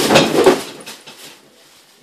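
A short, loud burst of rattling and scuffling that fades within about a second: a cardboard shoebox knocked about and a startled dog scrambling.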